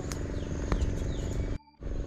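Steady outdoor ambience: a low droning hum under a thin, high, steady insect whine, with a few faint clicks. The sound cuts out briefly near the end.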